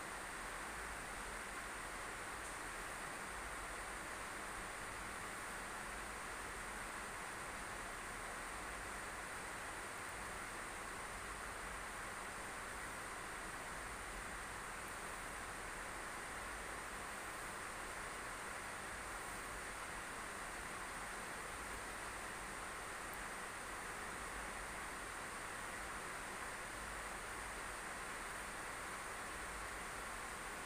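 Steady, even hiss of background room tone, with no distinct sound standing out.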